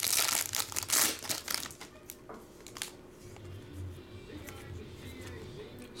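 Foil trading-card pack wrapper crinkling as it is torn open and handled. The crinkling is loudest in about the first second, then turns to softer, scattered rustling.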